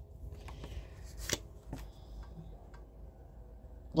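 Cards being handled and drawn from a deck by hand: faint rustling with a few light clicks and taps, the sharpest a little over a second in.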